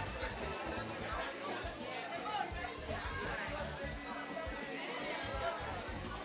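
Indistinct chatter of many voices in a crowded room, with music underneath.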